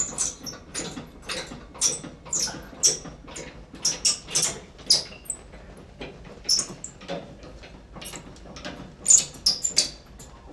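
Manual hospital bed being cranked: the crank and its mechanism under the frame give a series of short squeaks and clicks, a couple a second.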